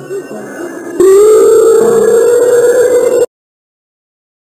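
A quieter wavering sound, then about a second in a sudden, very loud distorted wail that slowly rises in pitch and cuts off abruptly after about two seconds.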